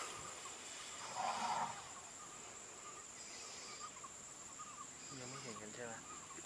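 Grassland ambience: a steady high insect drone with repeated small bird chirps. A short, louder rough call comes about a second in, and a low, voice-like sound near the end.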